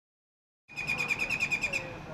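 A bird's rapid chattering trill, about a dozen high notes a second, starting a little way in and stopping shortly before the end, over faint low background noise.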